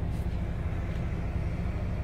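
Inside the cab of a MAN TGX XXL 500 hp truck: its diesel engine running with a steady low rumble as the truck rolls slowly.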